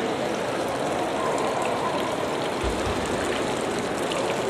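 Steady running water from an indoor fountain pool.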